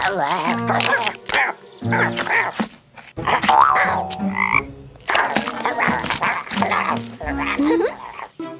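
Cartoon sound effects of a frog croaking several times in short, separate calls, mixed with other brief comic effects.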